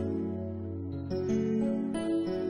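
Instrumental opening of a slow gospel song: sustained chords changing about once a second, played on keyboard, with no singing yet.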